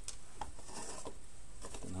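A few light clicks and a soft rustle as a clear plastic LED-strip battery box and its thin wire are handled. A spoken word comes in at the very end.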